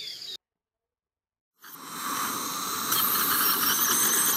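Sound-effect recording of a dentist's drill. After the previous effect cuts off and a second of silence, a high whining drill with a hissing edge starts about a second and a half in and keeps running.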